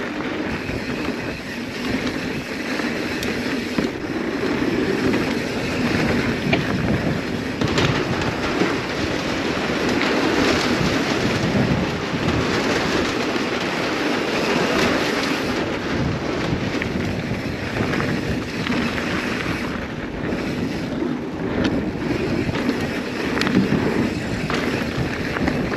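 Mountain bike descending a trail at speed, heard from a handlebar-mounted camera: wind rushing over the microphone and tyres rolling over dirt and wooden northshore planks, with a few sharp knocks as the bike hits bumps.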